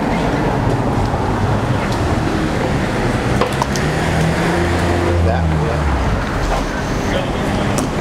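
Busy street traffic noise heard from the sidewalk, a steady wash of road noise with a vehicle's engine running loudest around the middle.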